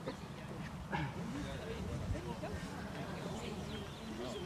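Quiet, indistinct talk of people a little way off, over a steady low background rumble, with a brief click about a second in.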